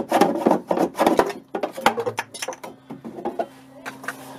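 Small handsaw cutting through PVC pipe: quick rasping strokes, about four a second, that stop after about a second. Scattered knocks and clicks follow, and a low steady hum comes in near the end.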